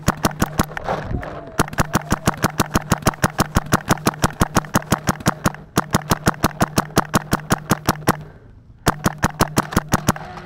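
Paintball marker firing rapid strings of shots, about ten a second, broken by short pauses about a second in, near the middle and past eight seconds. A steady low hum runs under each string.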